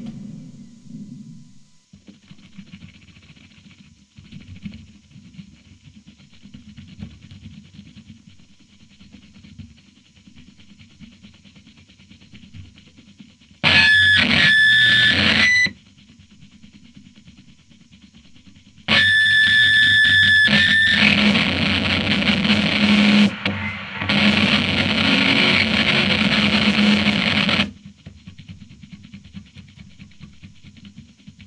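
Harsh noisecore: a low crackling rumble broken by loud bursts of distorted noise with shrill steady tones. The first burst comes about 14 s in and lasts two seconds. A longer one starts about 19 s in, breaks off briefly near 23 s, and ends about 27 s in, after which the quiet rumble returns.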